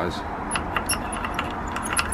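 A quick, irregular run of light, high clicks and jingles, like small hard objects rattling together.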